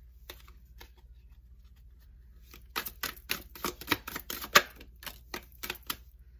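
A deck of cards being shuffled by hand: a few light card clicks at first, then about halfway in a quick run of sharp card snaps lasting about three seconds.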